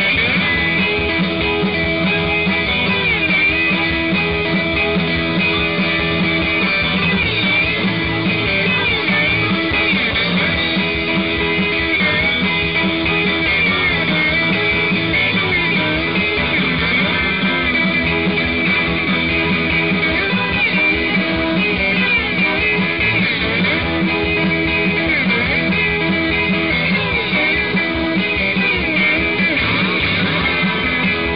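Live rock band playing amplified guitars and a drum kit in a steady, full-band passage.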